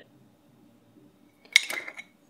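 A brief clink of a small glass spice jar against metal, with a short ringing tone and a couple of quick follow-up taps, about one and a half seconds in, after near silence while the seasoning is shaken in.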